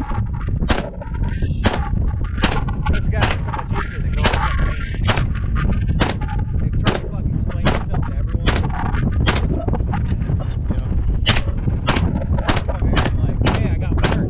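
9mm DIY Mac-style pistol with a carbon-alloy upper firing single shots at a steady pace of about one a second, some sixteen shots in all. There is a pause of about two seconds near ten seconds in.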